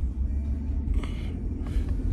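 Steady low rumble of a truck's engine and road noise, heard from inside the cab while driving.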